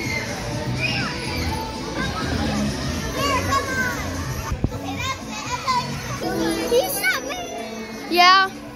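Children's voices shouting and calling over one another in a large, echoing indoor hall, with music playing in the background and a single sharp click about halfway through.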